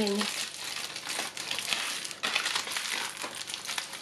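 Aluminium foil crinkling as it is folded and squeezed by hand around a duck's wing, a continuous crackle of many small crackles.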